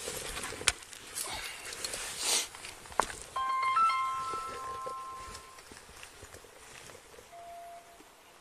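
Handling noise and rustling close to a body-worn microphone, with two sharp clicks, then a cluster of steady electronic beep tones lasting about two seconds and one short lower beep near the end.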